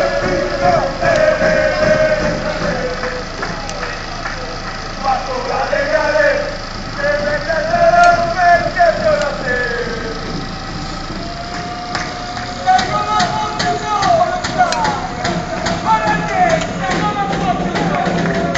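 Football ultras chanting together, many voices singing in loose unison with some long held notes. Scattered sharp taps or claps join in over the second half.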